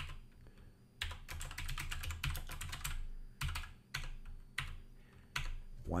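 Typing on a computer keyboard: a quick run of keystrokes about a second in, then a few separate key presses.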